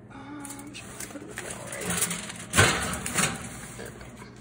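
Metal oven rack and a foil-covered baking dish clattering as the dish is pushed into an open oven, with the loudest clank about two and a half seconds in.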